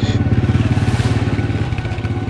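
A small engine running nearby with a rapid, even throb that holds steady throughout.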